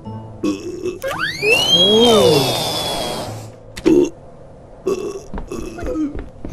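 Cartoon sound effects: a whistle sliding upward over a loud rushing whoosh, with a low rising-and-falling grunt like a burp in the middle. A few short vocal noises follow near the end.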